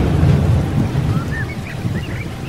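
A loud, low rumbling noise with a rough, rain-like hiss over it, joined from about halfway in by a few short, arched chirps.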